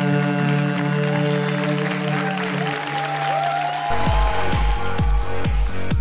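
A male singer holds the final long note of a pop-rock song over the band, under applause, and the note ends about two and a half seconds in. About four seconds in, an electronic dance jingle starts with a heavy, steady kick-drum beat.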